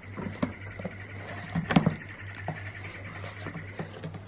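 A whippet puppy rummaging: scattered light taps, knocks and scratches, with a sharper cluster of knocks a little under two seconds in.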